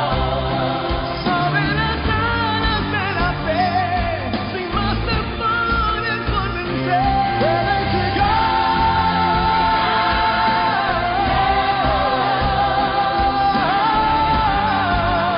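A song on the soundtrack: a solo singer holding long, wavering notes over a steady accompaniment, with one long held note in the middle.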